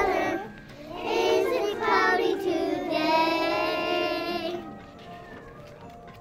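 A group of young children singing together, with one long held note about three seconds in, then quieter singing near the end.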